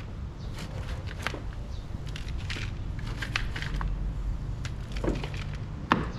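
Hand trowel scooping and tipping loose potting soil mixed with rice hulls into a plant pot: irregular gritty crunches and scrapes, with a sharper knock near the end. A steady low rumble runs underneath.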